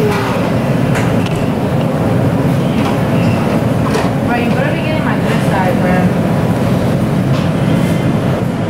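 Steady low rumbling drone of a commercial restaurant kitchen, with faint voices in the background and a few light clicks and knocks of food being handled.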